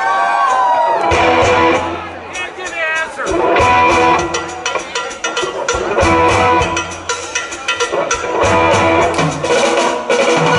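Live rock band playing, with electric guitars, bass guitar and drums.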